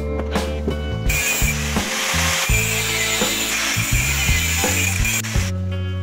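Angle grinder cutting into a galvanized steel pipe: a dense cutting noise that starts about a second in and stops abruptly near the end, over background music.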